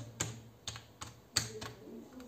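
Computer keyboard keys being pressed to type a phone number: about six separate, unevenly spaced keystroke clicks.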